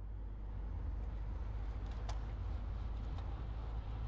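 Faint, steady low rumble of a car driving on the road, with one brief click about two seconds in.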